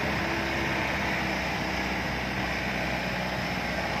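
Steady engine and road noise of a moving vehicle, an even rushing sound that does not change.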